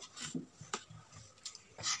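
A few faint, short clicks and light rubbing: handling noise from a camera moving over the table.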